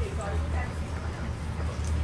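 Steady low hum under an even hiss from a deep fryer's hot oil as battered green beans are lifted out in a wire basket; a voice murmurs faintly.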